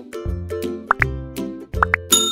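Background music with a steady beat, overlaid by two pairs of quick rising pops about a second apart: the click sound effects of an animated like-and-subscribe button being pressed.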